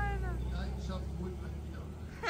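A vintage VW bay-window bus driving slowly past. Its low, steady engine sound fades over the two seconds, with the tail of a laughing "wow" at the start.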